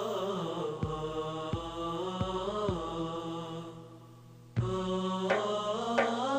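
Nasheed chorus holding a wordless chanted melody over regular percussion hits. Near the middle it thins and fades, then comes back with a strong beat.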